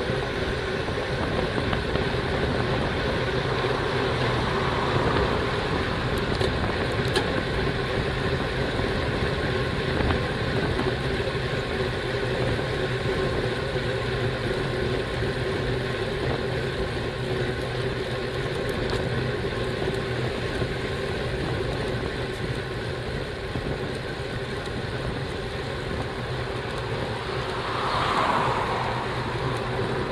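Steady wind rush and road noise picked up by a bicycle-mounted camera riding at speed, with motor traffic on the road; one louder swell near the end, like a vehicle going past.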